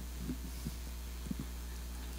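A steady low hum from the church sound system fills a pause in speech. A few faint soft taps sound about a third of a second, two-thirds of a second and just over a second in.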